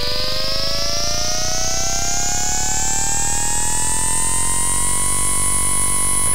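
Synthesized electronic tones, several together, gliding slowly upward and levelling off about five seconds in, then holding steady over a low steady hum. The sound is designed to stand for an electrolytic capacitor charging.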